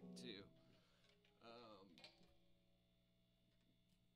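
Electric guitar notes through a tube amp die away in the first half-second, leaving the amp's low, steady hum. A brief faint pitched sound comes about a second and a half in.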